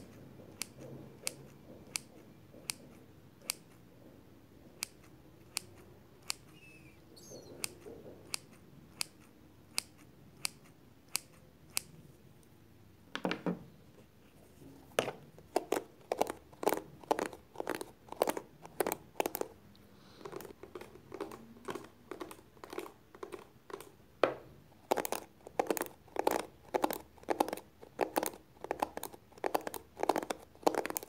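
Close-miked hairdressing scissors clicking shut in sharp single snips about once or twice a second. About halfway through this gives way to a comb drawn through long hair in quick repeated strokes.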